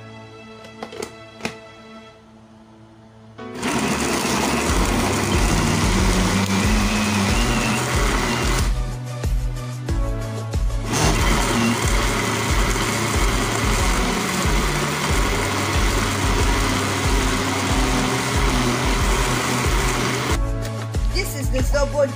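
Electric countertop blender grinding chopped pineapple into a pulp. It starts a few seconds in, pauses briefly about a third of the way through, then runs again until shortly before the end.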